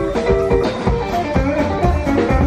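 Live band music driven by a plucked upright double bass, its low notes and quick string strokes prominent.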